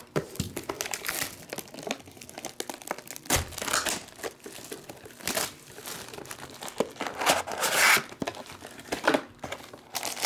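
Cellophane shrink-wrap being torn off a Panini Revolution trading-card box and crumpled in the hands, in irregular crinkling bursts, the loudest near the end.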